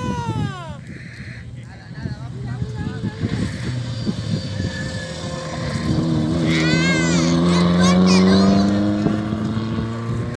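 A rally car's engine approaching and passing on a gravel stage. It grows louder from about six seconds in, rising in pitch to its loudest near eight seconds, then fades as the car drives away.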